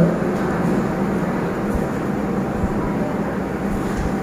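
Steady, even background hiss with a low hum, no voice.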